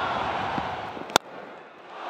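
Low stadium crowd murmur, then a single sharp crack of a cricket bat striking the ball about a second in.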